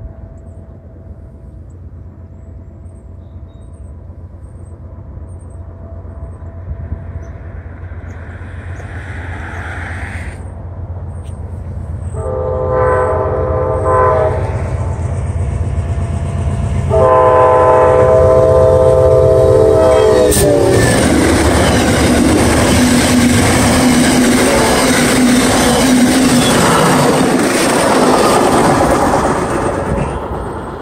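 Amtrak passenger train with a diesel locomotive approaching and passing close by. Its engine grows louder as it nears, and its horn sounds a shorter blast and then a longer one. The locomotive and cars then go by loudly, with wheels clattering on the rails.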